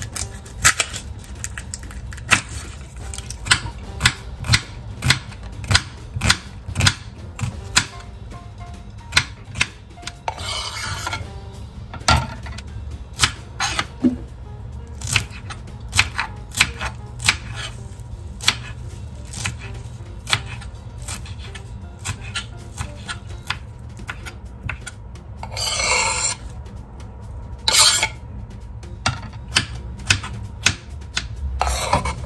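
Chef's knife chopping onion and cucumber on a cutting board: a brisk, irregular run of sharp knocks as the blade strikes the board, with a few short scraping sounds around the middle and near the end.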